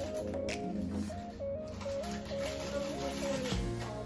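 Background music: a short melody of stepped notes repeating about once a second over a bass line.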